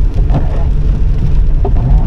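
Steady low road and engine rumble inside a moving car's cabin, with rain on the windscreen.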